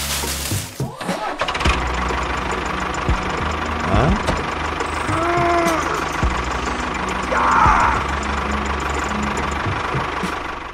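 Tractor engine running steadily, with background music underneath. A short rising-and-falling tone comes about five seconds in, and a brief louder surge follows near eight seconds.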